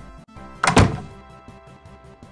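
A house door swinging shut with a sharp double thud a little over half a second in, over steady background music.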